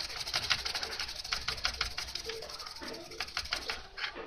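Toothbrush scrubbing the solder side of a receiver's printed circuit board in rapid scratchy strokes, several a second, stopping just before the end.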